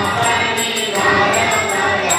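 Group of voices singing a devotional chant, with a steady beat of jingling metal percussion.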